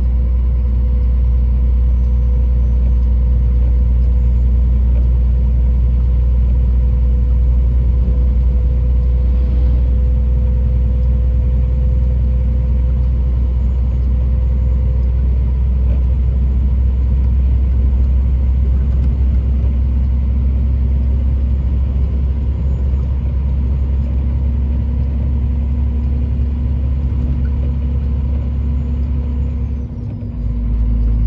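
A vehicle's engine and road noise heard inside the cab while cruising on a highway: a loud, steady low drone whose pitch holds constant, easing slightly over the last third.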